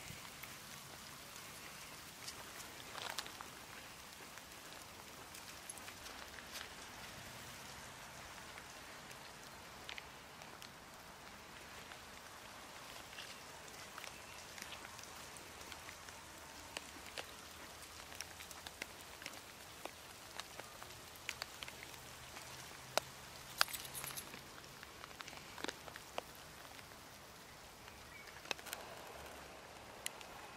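Faint steady outdoor hiss with scattered light, sharp clicks and ticks, a few louder ones about three quarters of the way through.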